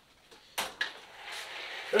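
Handling noise from a large RC rock crawler being moved on a workbench: two sharp knocks about half a second in, then about a second of soft rustling and scraping.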